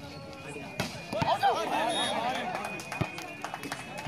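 Volleyball rally: two sharp ball hits, about a second in and about three seconds in, with several voices shouting together between them.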